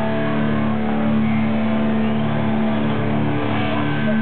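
Live hardcore band with heavily distorted electric guitars and bass holding a loud, sustained low chord through the club PA.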